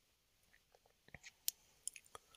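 A few faint, sharp clicks and small smacks over near silence, bunched about a second in and again near the end.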